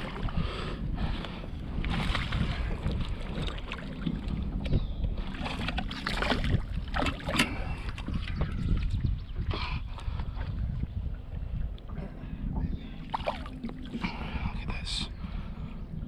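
Wind rumbling on the microphone over water splashing as a hooked smallmouth bass is drawn up beside the boat and landed by hand.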